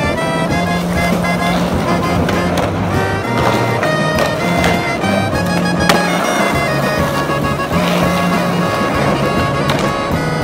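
Skateboard wheels rolling on asphalt and concrete under a music track with a moving bass line, with one sharp clack of the board about six seconds in.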